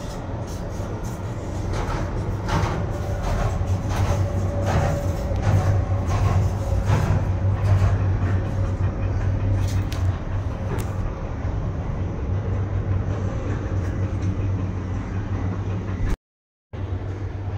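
Cable car gondola running past a support tower, heard from inside the enclosed cabin: a steady low hum under a run of rhythmic clattering knocks that lasts for roughly the first ten seconds, then settles back to the steady hum.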